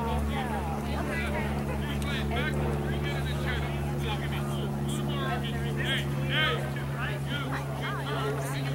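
A steady low mechanical hum, engine-like, runs throughout with short high chirping sounds scattered over it.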